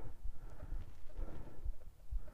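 Outdoor field ambience: uneven low wind rumble on the microphone with faint, irregular soft knocks from a handheld recorder being carried over grass.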